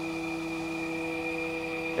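Jones & Shipman 1300 cylindrical grinder running, its motor and hydraulic drive giving a steady hum with a thin high whine.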